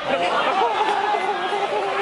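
Several people's voices talking and calling over one another, the chatter of players and spectators at a football match.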